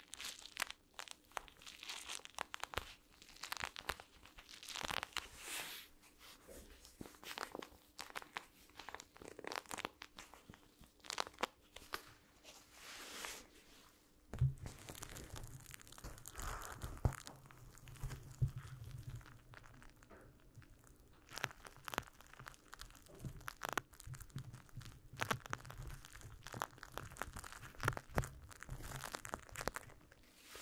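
Cloth pads rubbed, squeezed and scrunched against a condenser microphone's metal grille, making close, scratchy crinkling strokes. From about halfway through, the pads are pressed right onto the microphone, adding a low muffled rumble and soft thuds under the rubbing.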